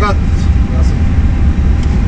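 A loud, steady low rumble, with a brief voice sound right at the start.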